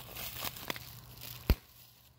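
Plastic air-pillow packing crinkling as a husky bites and tugs at it, with one sharp pop about one and a half seconds in.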